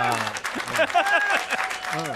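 Small studio audience applauding, with men's voices exclaiming and laughing over the clapping.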